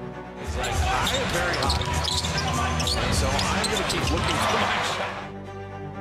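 Live basketball game sound: arena crowd noise with the ball bouncing on the hardwood court during play, over steady background music. The game sound comes in about half a second in and drops away near five seconds.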